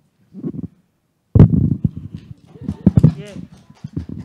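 Handling noise from a handheld microphone being moved and passed along: a sudden loud thump about a third of the way in, then a run of knocks and rubbing thuds. A voice says 'yeah' near the end.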